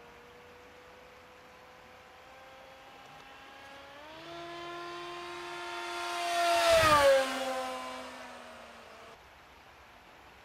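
Electric motor and propeller of an LR-1 Racing Devil RC racing plane making a fast pass. A whine grows louder from about four seconds in and peaks with a rush of air near seven seconds, then drops in pitch and fades as the plane goes by.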